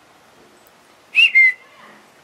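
A short, loud two-note whistle a little over a second in, the first note rising then falling and the second note lower and falling slightly.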